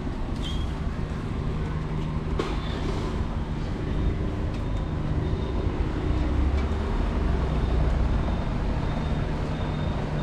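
Street traffic: a steady low vehicle engine hum with a noisy road background, the rumble swelling a little around six to eight seconds in.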